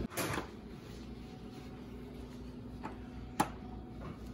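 A small craft magnet clicking onto a refrigerator door, one short sharp click about three and a half seconds in, against quiet room tone.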